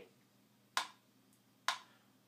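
Two sharp clicks about a second apart, a steady beat setting the tempo before the count-in of a piano exercise; no piano is playing yet.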